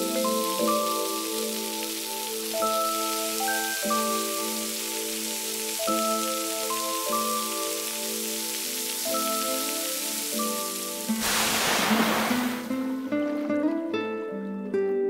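Hot oil sizzling in a wok as Pixian chili bean paste and aromatics fry, under background music with mallet-like notes. About eleven seconds in, a loud burst of hissing as liquid is poured into the hot wok; the sizzle dies down near the end.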